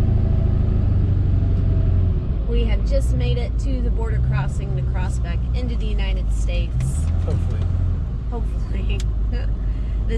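Steady low drone of a pickup truck's engine and road noise heard from inside the cab while driving, a little louder in the first two seconds.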